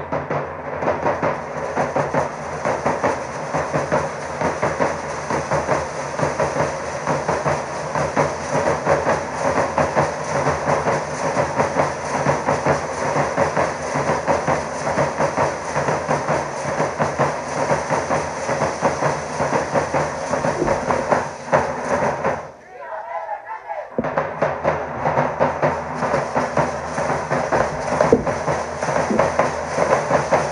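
Danza drum band of bass drums and snare drums beating a fast, steady, driving rhythm. The drumming breaks off about 22 seconds in and starts again a second and a half later.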